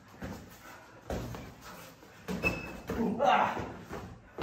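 Boxing gloves landing in a sparring drill: about four sharp punch impacts spread over a few seconds, the loudest near the end, mixed with breathing or vocal sounds.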